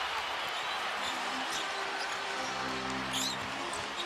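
Steady arena crowd noise, with the arena music holding a sustained chord that comes in about a second in and grows louder halfway through. A few basketball bounces and a brief sneaker squeak on the hardwood court sound over it.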